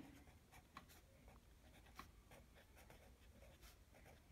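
Faint short scratching strokes of a pen writing on notebook paper.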